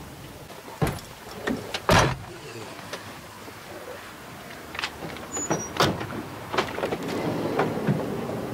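Work van being moved and handled in a car park: a run of sharp knocks and clunks, the loudest about two seconds in, over a low steady vehicle background.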